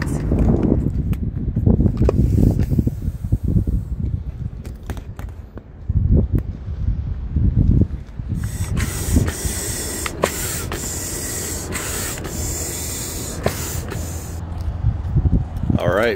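Vinyl inflatable kayak being handled and inflated: low rumbling and rubbing for the first few seconds, then a steady hiss of air with sharp clicks through the second half.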